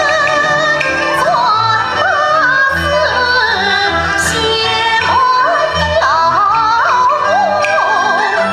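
A woman singing a Yue opera aria in the young-male (xiaosheng) style, with a bright, heavily ornamented melody full of pitch glides and quick turns. Sustained instrumental accompaniment runs under the voice, with a few sharp percussion strikes.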